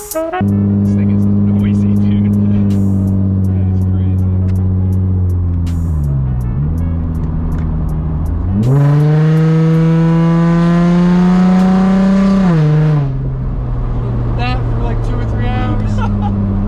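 Nissan 350Z's 3.5-litre V6 heard from inside the cabin while driving. It runs steadily, eases off around six seconds in, then revs up hard about eight and a half seconds in and holds high revs for some four seconds before lifting off to a lower steady note.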